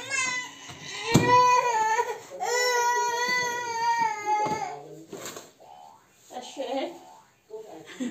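A toddler crying in two long, high wails of about two seconds each, then quieter broken sounds.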